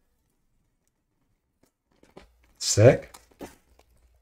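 Near silence for over two seconds, then a brief wordless vocal sound rising in pitch together with crinkling of a thin clear plastic sleeve being pulled off a graded-card case, with a few faint plastic ticks after it.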